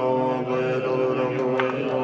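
Tibetan Buddhist monks chanting in unison: many low voices holding steady, drawn-out tones.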